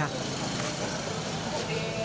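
Street noise with a motorbike engine running past, and people talking faintly in the background.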